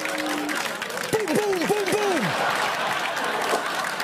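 Audience applauding, with four quick rising-and-falling tones about a second in.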